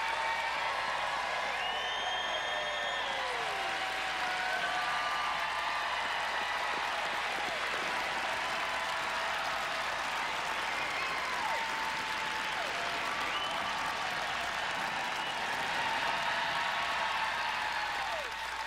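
Large arena audience applauding steadily, with scattered cheers rising above the clapping.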